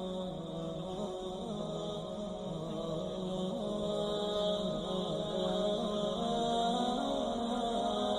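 Slow, droning chant with long held notes that waver and bend in pitch.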